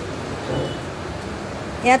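Steady background noise with no distinct event, a low rumble and hiss, then a voice starting right at the end.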